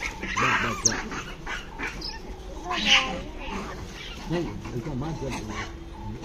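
Rhesus macaques giving short, high-pitched screeching cries as they squabble: one burst near the start and another about three seconds in.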